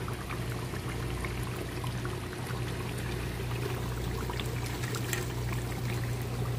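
Meat curry with whole potatoes simmering in a pan on a gas stove: a steady bubbling with small scattered pops, over a steady low hum.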